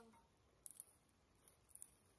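Faint crackling and clicking of a raw shrimp being peeled by hand in thin plastic gloves, the shell and gloves crinkling. It comes in two short bursts, a little over half a second in and again about a second and a half in.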